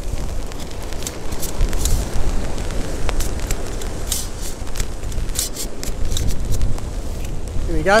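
Wind rumbling on a phone microphone, with rustling and scattered clicks as a hand-held umbrella's fabric and frame are handled and opened.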